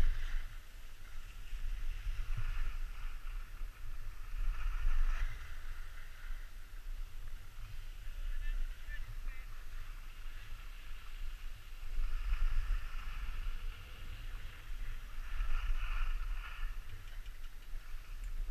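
Skis hissing and scraping over packed snow, swelling and fading several times, over a steady low wind rumble on the camera microphone.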